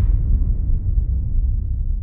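Deep rumble of a dramatic soundtrack sound effect, beginning with a sudden low hit as the higher music cuts off and slowly fading.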